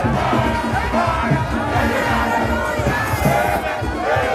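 Dense crowd of many voices singing and shouting together, with music playing underneath.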